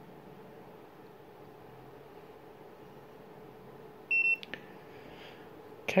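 Spectra T1000 EFTPOS terminal giving one short, high-pitched electronic beep about four seconds in as it boots up, restarting after a software download. A faint steady room hum lies underneath.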